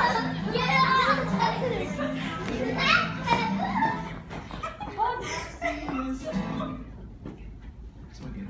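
Young children's voices as they play and run about, with music underneath that fades out near the end.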